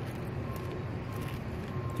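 Steady low rumble of distant road traffic, with a faint thin tone that comes and goes.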